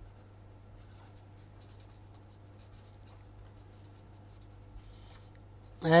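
Marker pen writing on paper: faint, irregular scratching strokes as words are written out, over a steady low hum.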